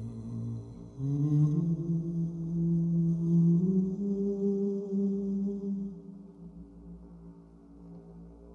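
A man's voice chanting a long, slow, wordless note in intuitive 'soul sounding' style. The note enters about a second in, steps slightly upward and fades out around six seconds, over a steady layered drone from a live loop recording.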